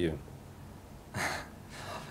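A man's short in-breath, about a second in, in a pause before he answers; the rest is quiet room tone.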